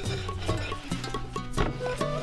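Background instrumental music: short plucked notes over a steady percussion beat, about two strikes a second.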